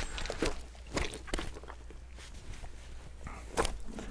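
Landing net with a landed carp being handled on the seat box: scattered light knocks and clicks over soft rustling of the net mesh.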